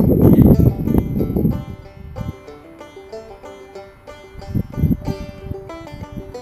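Wind buffeting the microphone loudly for the first second and a half, then light background music of plucked strings, with a short gust of wind about five seconds in.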